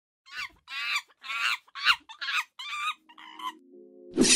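Six short, high-pitched animal calls in quick succession, each dropping in pitch at its end, followed about three seconds in by steady low musical notes from an intro sting.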